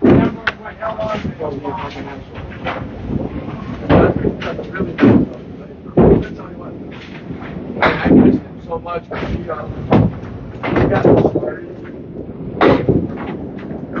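Candlepin bowling alley in play: repeated heavy thuds and clatter of balls hitting the lanes and knocking down pins across several lanes, a dozen or so sharp impacts spaced irregularly over a busy background of chatter.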